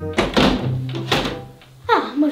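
Background music with two sharp thunks, about a tenth of a second and a second in, as a wooden window frame is handled; a quick falling swoosh comes near the end.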